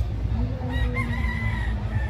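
A rooster crowing once, one long call of about a second and a half that steps up in pitch partway through, over a steady low background rumble.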